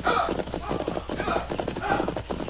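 Radio-drama sound effect of two horses galloping past on a trail: a fast, dense run of hoofbeats.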